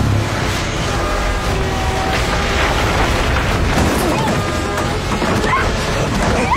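Dense action-film soundtrack: a music score under heavy booms and crashing, with a few short cries or shouts from about four seconds in.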